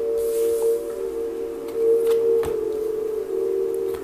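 Background music of steady held tones, with a few faint taps as tarot cards are laid on a cloth-covered table.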